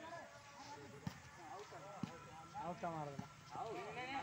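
Shouts and calls of volleyball players and onlookers, with two sharp slaps of a volleyball being struck by hand about a second apart.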